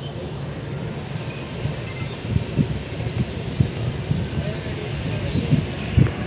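Low, steady rumble of a passenger train at a railway platform, with irregular low thumps in the second half and voices in the background.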